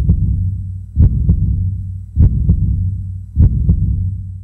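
A heartbeat sound effect: deep double thumps, lub-dub, about once every second and a bit, over a steady low drone, fading out near the end.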